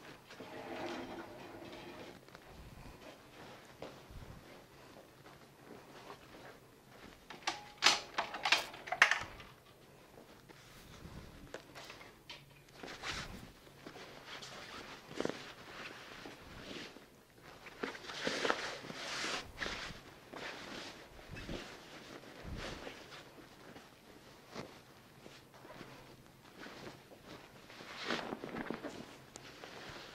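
Bed sheets rustling in irregular bursts as linen is pulled and smoothed across a hospital bed with a patient lying in it. The loudest handling comes about eight to nine seconds in, with further rustles later.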